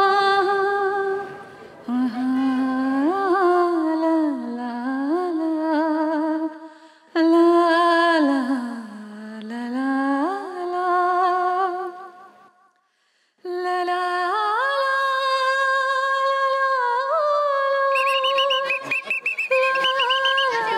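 A solo voice humming a slow, wordless melody with long held notes and sliding pitch, broken by short pauses. It stops for about a second past the middle, then returns on steadier held notes.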